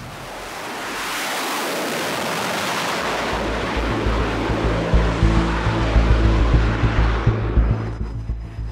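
Navy jet's engines at full power as it launches off an aircraft carrier deck: a broad roar that builds over the first second and thins near the end as the jet departs. A low rumble with irregular thumping runs beneath it from about three seconds in.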